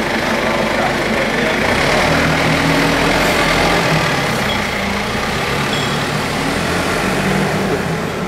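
Yale forklift truck's engine running steadily as the loaded forklift drives away.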